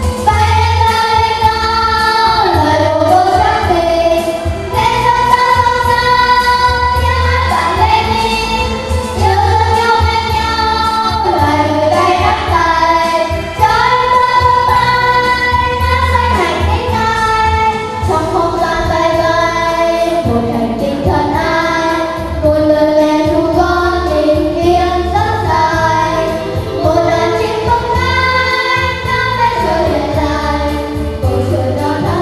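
Young girls singing a song into handheld microphones, solo and in pairs, over instrumental accompaniment with a steady bass beat.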